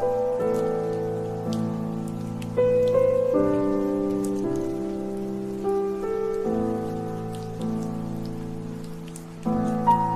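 Slow solo piano instrumental, chords struck every second or few and left to fade, over steady rain ambience with scattered drop ticks.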